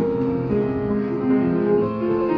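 Slow, classical-style music with long held bowed-string notes over piano.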